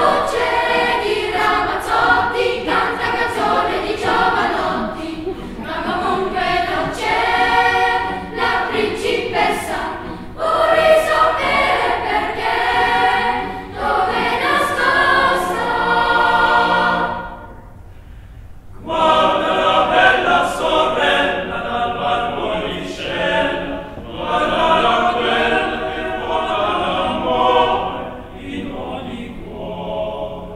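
Boys' choir singing in phrases, with a short pause a little past halfway before the voices come back in.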